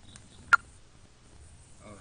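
A single short, sharp click about half a second in, over faint background noise.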